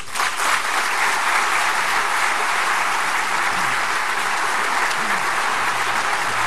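Large audience in a conference hall applauding steadily after a speech ends.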